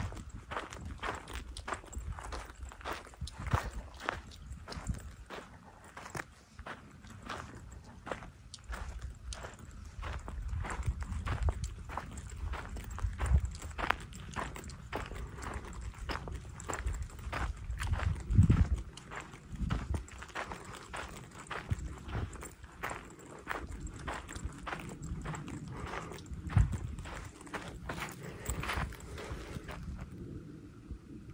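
Footsteps crunching along a sandy, gravelly dirt trail, a steady walking pace of about two steps a second, with occasional low rumbles.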